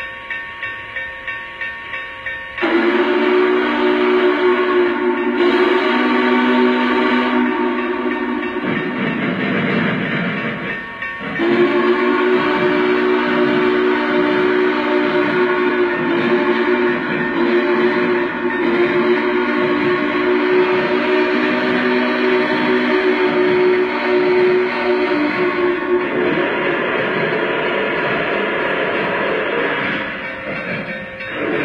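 Lionel Visionline Big Boy model locomotive's onboard sound system: steam chuffing as it pulls away, then two long blasts of its chime steam whistle, the first about six seconds long, the second running about fourteen seconds before cutting off, with the chuffing going on underneath.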